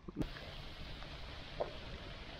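Faint, steady outdoor background hiss that starts abruptly with an edit just after the start, with one brief faint blip about one and a half seconds in.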